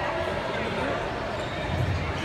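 Balls thudding on a wooden gym floor, with voices chattering in the echoing hall. A louder thud comes near the end.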